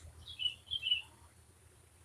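A small bird chirping: a few short, slightly falling chirps in two quick groups in the first second, over a faint low background hum.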